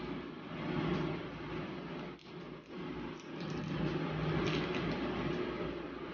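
Steady low background hum, with a few faint crinkles of a small plastic snack wrapper being handled about halfway through.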